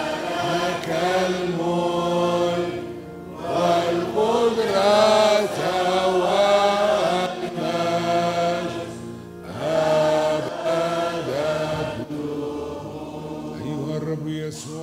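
Girls' choir singing a chanted liturgical response in three phrases, with short breaks between them, over steady held keyboard chords.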